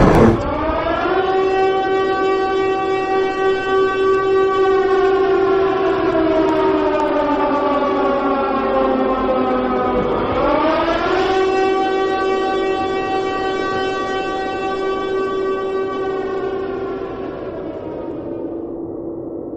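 Civil-defense air-raid siren wailing: the pitch winds up at the start, holds, sinks slowly, then winds up again about ten seconds in and holds before fading near the end.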